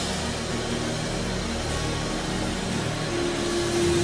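Soft, sustained worship keyboard music under the steady wash of a large hall, with a new held note coming in about three seconds in.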